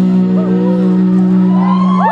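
Live band with violin holding one long chord, a steady low note under higher sustained tones, while short whoops come from the audience; rising whoops or whistles start right at the end.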